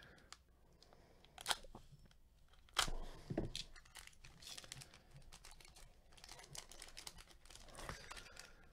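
A trading card pack wrapper being torn open by hand: faint handling, a sharp rip about three seconds in, then crinkling of the wrapper and a few small clicks.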